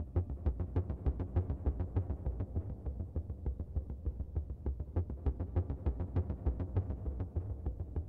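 Sequenced electronic synthesizer music from a hardware rig of Behringer Neutron, Korg Volca Bass and Korg Monologue with reverb and delay: a deep pulsing bass under a steady run of short notes repeating quickly.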